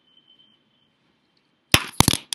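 A faint, steady high whine, then two loud, sharp clicks close together near the end.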